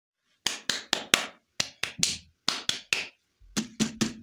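A series of about a dozen sharp taps, each ringing off briefly. They fall in quick groups of three or four with short pauses between.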